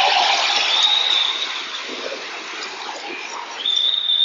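Large audience applauding and cheering in a speech hall, dying down gradually.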